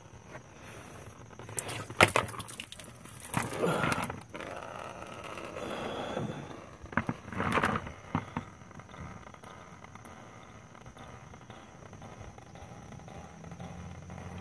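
Coolant running out of the drain of a BMW E36 radiator into a drain pan, with a few sharp knocks of handling about two seconds in; the sound fades to a faint background for the second half.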